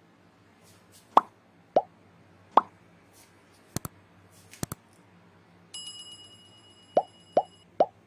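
Subscribe-button animation sound effects. Three short pops are followed by two quick double clicks about halfway through. A ringing notification-bell chime then sounds under three more pops near the end.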